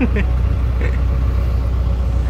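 A Toyota 4x4's engine running with a steady low drone, heard from inside its cabin, while the vehicle is tethered by a tow rope to a truck stuck in lahar.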